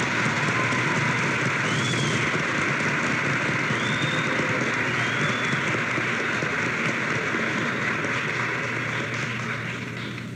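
Audience applauding, an even patter of many hands clapping that eases a little near the end.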